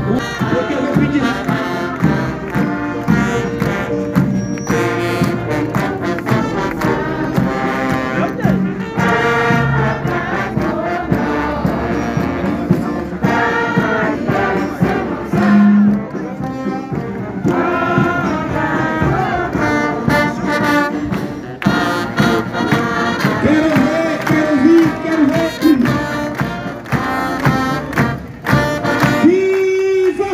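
Brass band of trombones, trumpets, saxophones and tubas playing a tune outdoors without a break.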